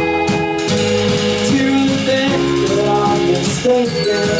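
A live indie rock band playing a slow song on keyboard, electric guitar, bass and drum kit. Regular drum strokes under held chords stop under a second in, leaving sustained notes that step through a changing chord line.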